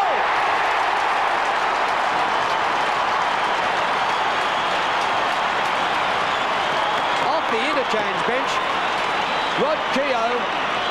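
Large stadium crowd cheering and clapping a goal just kicked, steady throughout.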